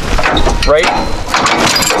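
Metal clanking and rattling as a Roadmaster Stowmaster tow bar's coupler is lifted by hand off the motorhome's hitch, freed once its spring-loaded latch is pulled back, with a man's voice over it.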